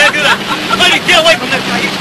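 Agitated, overlapping shouting voices in an argument, over a steady low hum.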